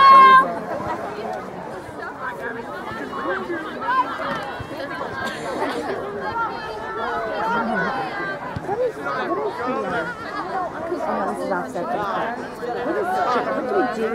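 Spectators' overlapping conversation: several voices talking at once, no single one clear, with a loud, high-pitched shout right at the start.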